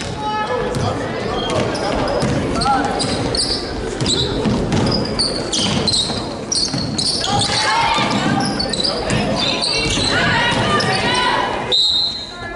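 Live basketball play in a gymnasium: the ball bouncing on the hardwood floor amid players' and spectators' shouting voices, echoing in the hall.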